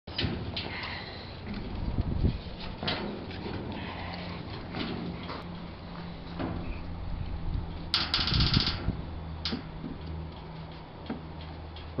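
Clicks and knocks from a steel mesh dog box being handled, over a steady low hum, with a brief louder burst of noise about eight seconds in.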